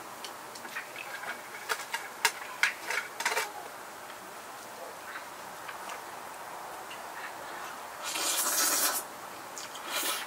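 Metal chopsticks clicking and tapping against a stainless steel pot and small metal bowl as noodles are served, in quick sharp clicks for the first few seconds. About eight seconds in comes a noisy slurp of noodles lasting about a second.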